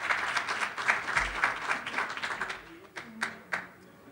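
Audience applauding: dense clapping that thins out about three seconds in, ending with a couple of last separate claps.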